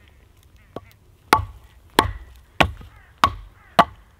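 Wooden baton striking the back of an axe driven into a log to split it (battoning): a faint tap, then five sharp knocks about two-thirds of a second apart, each with a short ringing tone.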